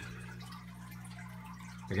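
Faint trickling and dripping of water in a large home aquarium over a steady low electrical hum.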